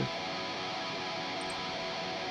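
A metal song playing back steadily at low level: distorted electric guitars run through STL Tonehub amp-sim presets, a Mesa Mark V tone layered with a Bogner Überschall preset.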